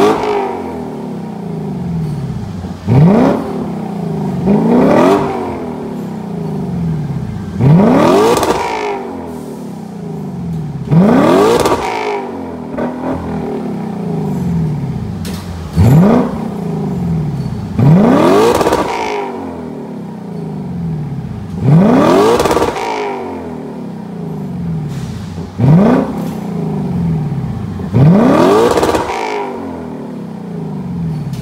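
Lexus LC500's 5.0-litre naturally aspirated V8 with a full Fi Exhaust valved system, stationary and blipped about nine times: each rev climbs sharply and drops back to a burbling idle, a few seconds apart.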